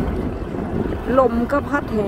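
Wind buffeting the microphone aboard a moving boat: a steady low rumbling noise.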